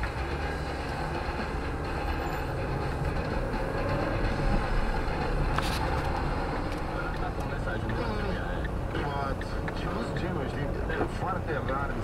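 Steady rumble of engine and road noise inside a car driving in city traffic, with a single sharp click about halfway through.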